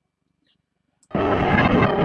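Near silence for about a second, then a music sample starts suddenly and plays loudly from the Akai MPC Studio software, auditioned for slicing into chops.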